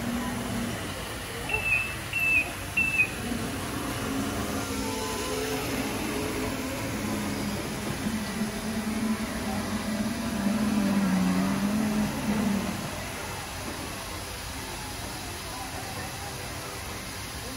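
Tennant T7AMR robotic floor scrubber running as it drives itself, a steady hum of its motors and scrubbing brushes under general store noise. Three short high beeps come quickly one after another about two seconds in.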